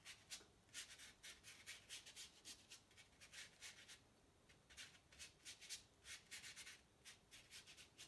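Faint, quick strokes of a child's paintbrush scratching across watercolour paper as thin paint is brushed on loosely, about two to three strokes a second with a short pause midway.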